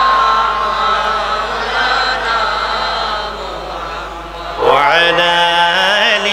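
A man's voice chanting Islamic zikr (dhikr) into a microphone in long, held, wavering notes. About four and a half seconds in, a new phrase starts with a sharp rise in pitch and gets louder.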